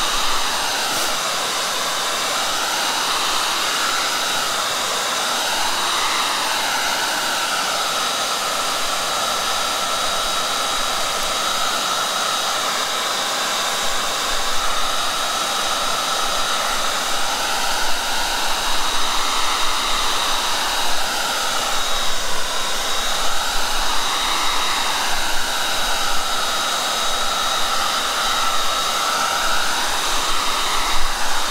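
Handheld hair dryer blowing continuously to dry wet watercolour paint, with a steady high whine and a lower tone that wavers up and down as it is moved over the paper.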